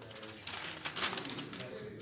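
Paper ballots and a plastic sheet crackling and rustling in a quick cluster as hands sort the ballots into piles, over a low murmur of voices.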